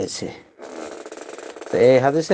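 A man lecturing in Bengali. Speech stops about half a second in, a soft hiss-like noise fills about a second, and he speaks again near the end.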